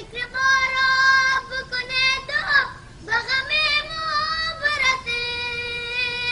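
A young boy singing, holding long high notes with a brief break about three seconds in and one long sustained note near the end.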